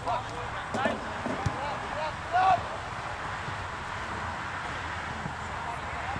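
Soccer players shouting short calls across the field over steady outdoor background noise, loudest about two and a half seconds in. A single sharp thump comes about a second and a half in.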